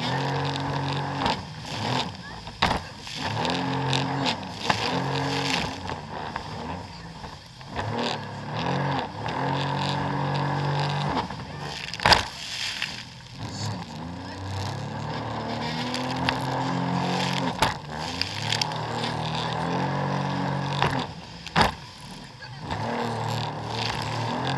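Jet ski engine running under way, its pitch rising and falling over and over as the throttle and load change across the waves, with wind and spray noise. Several sharp slaps cut through it, the loudest about halfway, as the hull hits the water.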